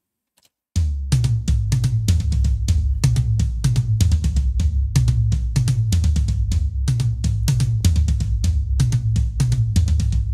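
Recorded music playing back from a mixing session: a drum kit with fast, hard hits, about four or five a second, over a heavy bass, starting suddenly about a second in.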